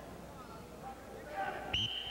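Faint gym noise, then near the end a referee's whistle blows one steady shrill note, stopping the wrestling action.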